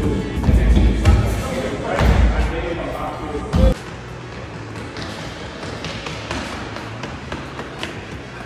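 Thuds of a person landing jumps on a gym floor, heavy in the first two and a half seconds, with the sharpest single thud about three and a half seconds in. Background music and voices run under it.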